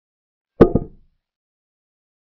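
Digital chess board's piece-move sound effect: a short wooden knock followed at once by a second, lighter knock, marking a pawn capture.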